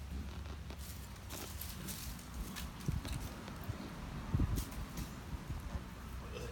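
Faint rustling and shuffling with scattered soft knocks over a low rumble, and a dull thump about four and a half seconds in.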